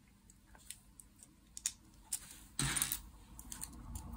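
Small plastic clicks and taps of LEGO bricks being handled and pressed onto a part-built model, a few sharp ticks in the first two seconds, then a louder brief clatter of handling about two and a half seconds in.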